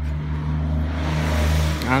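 A car passing close by. Its engine and tyre noise swell to a peak about a second and a half in, over a steady low hum.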